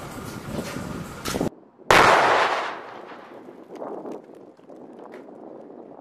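A demolition charge detonating inside a concrete box about two seconds in: one sudden blast that fades over a second or so.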